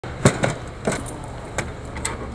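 Gloved hands handling the metal cabinet of an 8-liner gambling machine: four sharp metallic clicks and clanks, the loudest about a quarter second in.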